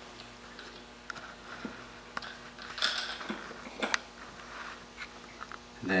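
Light clicks and taps of small metal parts being handled as a flat washer is fitted over the buttstock stud of a Beretta 391 shotgun, with a few sharper clicks about two to four seconds in.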